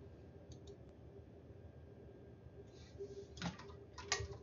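Faint computer mouse clicks over quiet room tone: a couple of very soft clicks about half a second in, and one a little stronger about three and a half seconds in.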